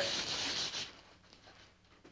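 Sandpaper rubbed by hand along a wooden gunstock clamped in a vise, a dry scratchy rasping that stops about a second in.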